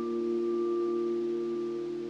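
Background music: a soft keyboard chord held and slowly fading, with no new note struck.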